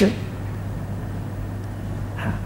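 A pause in speech: a steady low hum with faint background hiss, after the last syllable of a man's word dies away at the very start.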